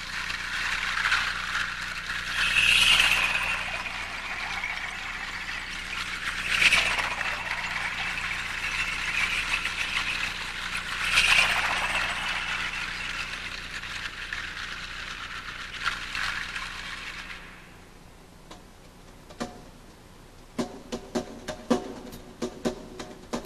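Zildjian cymbals and gong struck and left to ring in long shimmering washes, with fresh strikes about three, seven and eleven seconds in. The ringing cymbal is lowered into a bucket of water, bending its tone slightly downward, and it dies away after about seventeen seconds. Light taps follow, then quick drum hits near the end.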